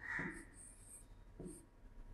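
Faint scratches and taps of a stylus writing the numeral 5 on the glass of an interactive touchscreen board, a few brief soft sounds.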